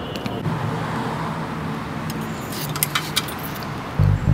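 Street ambience with steady car traffic noise, and a short run of sharp, light clicks a little past the middle.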